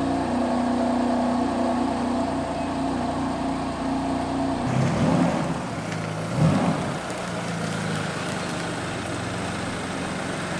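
Car engine running steadily, then dropping to a lower note about five seconds in, with two short revs soon after.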